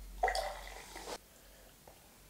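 Carbonated bubblegum soda poured from a can into a glass tumbler, a splashing pour that stops about a second in. A light click follows near the end.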